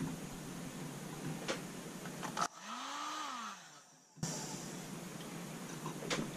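Electric heat gun blowing steadily, used to heat vinyl lure tape onto a metal spoon. Its noise drops out for under two seconds midway, then resumes.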